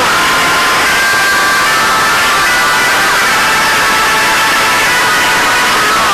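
Loud, hissy game-video soundtrack: a heavy wash of static-like noise with several held tones, and a gliding tone near the start.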